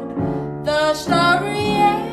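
Small-group jazz recording in waltz time: a female voice sings over piano, bass and drums.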